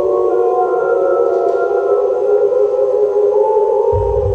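Contemporary chamber music for tape and instruments: a dense cluster of held tones in the middle range, with higher lines above that bend slowly in pitch, giving an eerie, theremin-like drone.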